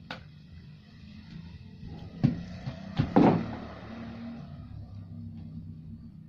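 Knocks and a short clatter of cleaning gear being set down and handled, the loudest a little after three seconds, over a steady low hum.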